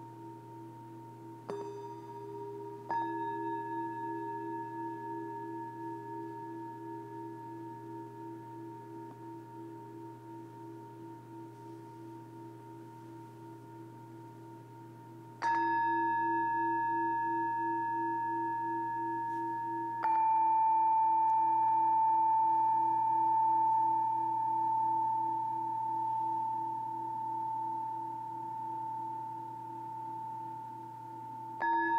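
Metal singing bowls struck with a mallet. There are two strikes close together near the start, another about halfway through and a louder one about two-thirds through. Each strike rings on in long, overlapping tones that pulse slowly as they fade.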